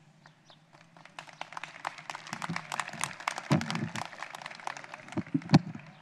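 Audience applauding with many separate hand claps, building from about half a second in and thinning toward the end, with a couple of louder thumps in the second half.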